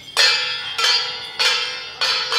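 Metal percussion struck in a steady beat, three strikes in two seconds, each one ringing on with a bright metallic tone. It is the beat that accompanies a jiajiang troupe's dance.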